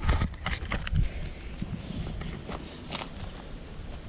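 Footsteps on a gravel path and dry grass, about two a second, with the loudest steps at the start and about a second in.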